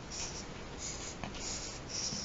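Felt-tip marker drawing on sketchbook paper: several short scratchy strokes, one after another, as the lines of a star are drawn.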